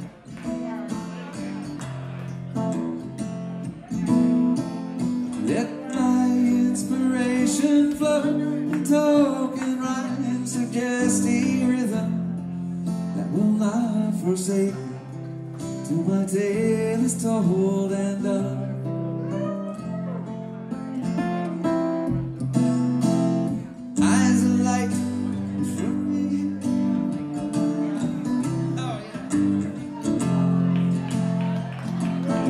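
A man playing a solo electric guitar live, with sustained chords and picked melody, and singing over it through much of the middle.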